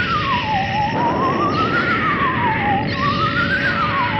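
A wailing tone with a fast wobble, slowly rising and falling about once every two to three seconds, over a loud steady hiss.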